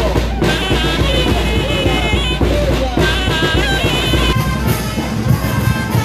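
Brass band music with drums, with held brass notes over a steady beat. The deep bass drops away about four seconds in.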